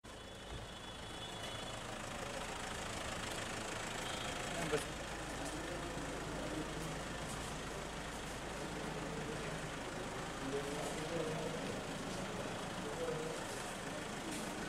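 Street ambience: a motor vehicle engine running, with indistinct voices of people nearby. There is a brief knock a little under five seconds in.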